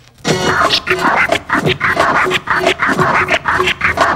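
Turntable scratching on Technics decks: a record sample cut into rapid, choppy strokes with the mixer's crossfader. It starts about a quarter second in, after a brief drop-out of the music.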